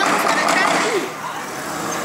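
A van driving slowly along a street, its engine and tyres a rushing noise that is loudest in the first second and then eases off, with a short call from a person's voice at the start.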